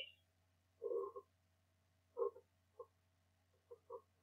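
Faint vocal sounds: a handful of short murmured syllables or throat sounds spaced irregularly about a second apart.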